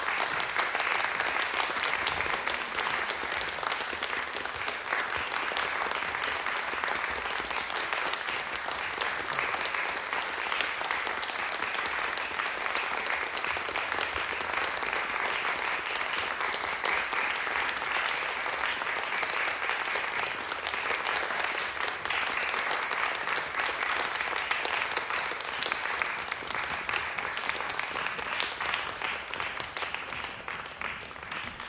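Audience applauding: steady, dense clapping that eases off slightly near the end.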